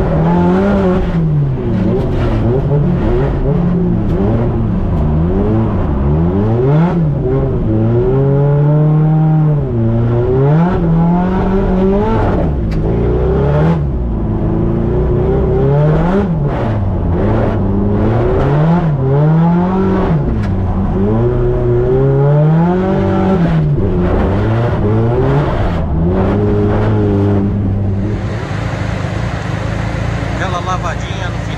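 Turbocharged Nissan Silvia S15 engine heard from inside the cabin, revving up and dropping back over and over as it is driven hard through a drift run. The revving stops near the end.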